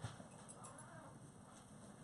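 Near silence: room tone in a small hall, with a few faint clicks in the first second.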